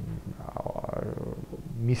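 A man's drawn-out, creaky hesitation sound, a low pulsing 'mmm' made with his lips closed while he searches for a word. Speech resumes near the end.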